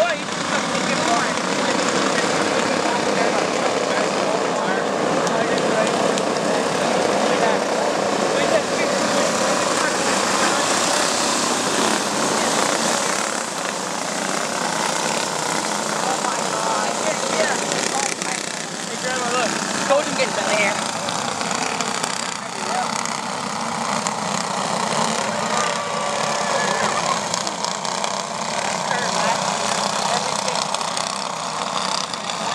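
A pack of flathead-engine dirt-oval racing karts running together, their engines rising and falling in pitch as they work around the track.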